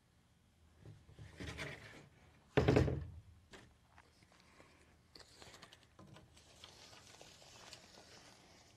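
A 2x4 board set down on a plastic folding table: soft handling noise, then a single loud wooden thunk about two and a half seconds in. Near the end, the faint rattle of a tape measure blade being pulled out along the board.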